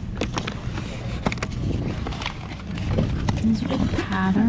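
Rustling and crinkling of paper, cloth and cardboard as hands rummage through a box of old items, a string of short sharp rustles and clicks over a low rumble, with faint murmuring voices near the end.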